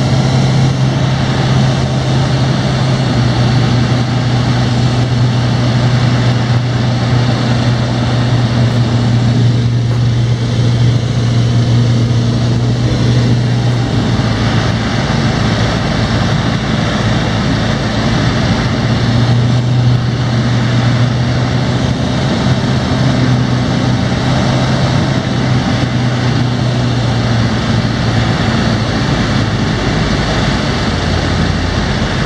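Cabin drone of a SportCruiser light aircraft's Rotax 912 flat-four engine and propeller on final approach: a steady low hum at reduced power whose pitch shifts slightly a few times with throttle changes, over a rush of air noise.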